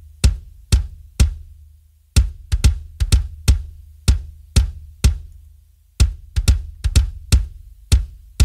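An electronic kick drum playing a syncopated loop on its own, about two hits a second. Each hit has a sharp click on top and a deep low tail that runs on between the hits.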